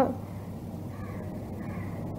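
Two faint calls, of the kind a bird would give, about half a second and a second and a half in, over a steady low hum of background noise.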